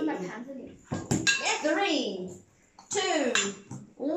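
Tableware clinking on the table, a sharp knock of bowls, plates and spoons about a second in. A voice speaks in two short phrases with sweeping pitch.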